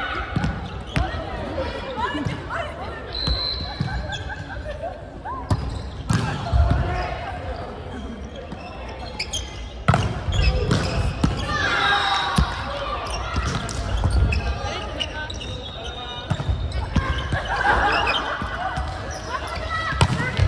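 Volleyball being struck in a rally, with sharp hand-on-ball smacks, the loudest about halfway through as a spike is hit at the net. Players shout calls throughout, and the hall echoes.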